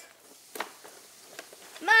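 Faint taps and rustles of a cardboard toy box being handled and tipped, two small knocks standing out, before a girl's voice comes in near the end.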